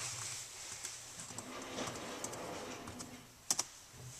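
Light typing on a computer keyboard, a few scattered key clicks, with two sharper clicks near the end.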